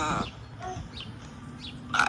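A short pause in outdoor talk: low steady background rumble with a few faint, short high chirps. Speech trails off at the start and a voice returns at the end.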